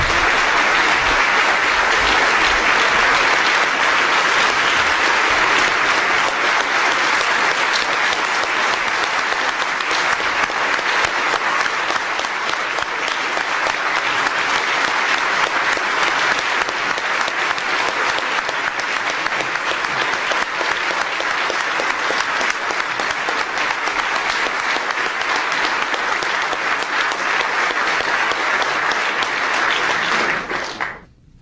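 A large audience applauding, a dense, even clapping that eases a little after about six seconds.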